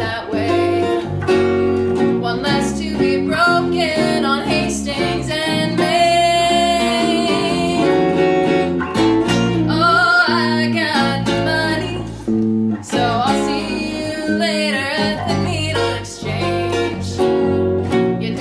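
A small band playing a song: hollow-body electric guitar and electric bass, with a woman singing lead.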